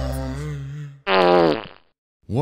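The intro theme music fades out. About a second in, a short, loud pitched sound slides downward in pitch for under a second and then stops.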